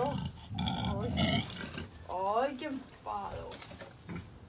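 A domestic pig calling, mixed with a woman's voice speaking to it.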